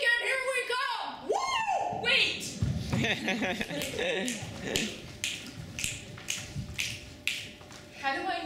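Performers' voices in the first second or two, then a steady beat of sharp taps, about two a second, as the group moves across a wooden stage.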